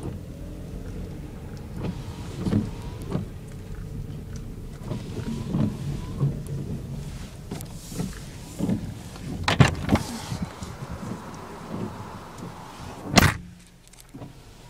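A car running at low speed, heard from inside the cabin: a steady low engine and road hum, broken by several short knocks and thumps, the loudest about a second before the end.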